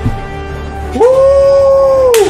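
A voice sings one long, high held note. It slides up into the note about a second in and starts to fall away at the end, over a low musical rumble.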